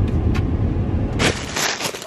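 Low rumble inside a car cabin, cut short about a second and a half in by a loud burst of rustling and a few clicks as the camera is picked up and handled.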